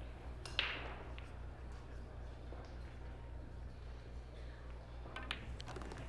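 A pool shot: the cue tip strikes the cue ball and it clicks sharply into an object ball about half a second in. A few fainter ball clicks come near the end, over a steady low hum.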